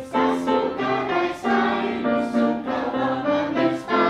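A song playing: a group of voices singing together over instrumental accompaniment.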